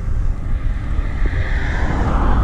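An oncoming car passing close by the bicycle, its tyre and engine noise swelling from about a second in and peaking near the end, over steady wind buffeting on the microphone.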